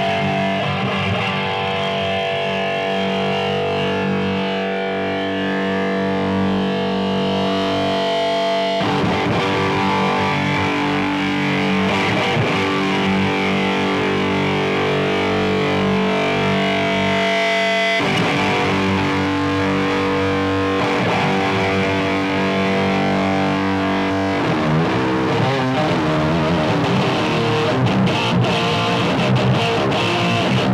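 Electric guitar played through a Laney Ironheart valve amp on its overdriven rhythm channel: long ringing chords that change about every nine seconds, then faster, choppy riffing from about two-thirds of the way in.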